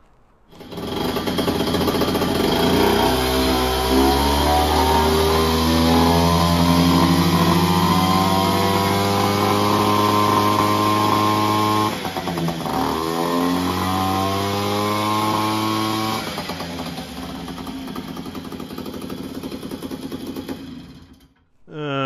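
Two-stroke moped engine running hard on a roller dynamometer. Its pitch climbs steadily as the revs build, dips sharply about twelve seconds in, and climbs again. It then falls to a lower, steady run and cuts off just before the end.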